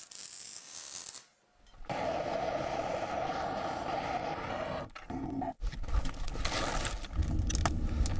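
Brief crackling hiss of electric arc welding, then after a short gap a steady hiss of a handheld gas blowtorch lighting the wood in a rocket stove's feed chamber. Near the end, a low rumble with knocks as kindling is dropped into the feed chamber.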